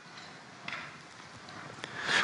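Faint room tone with a couple of soft, brief clicks, one just under a second in and one near the end.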